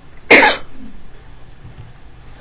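A single loud cough, about a third of a second long, shortly after the start.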